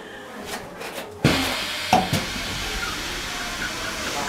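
A steady hiss starts suddenly about a second in and keeps on, with a single knock shortly after.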